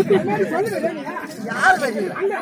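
People talking close by, voices overlapping in chatter.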